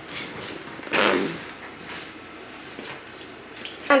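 Handling and rummaging noise from someone searching through things with the camera in hand, with one short louder sound about a second in.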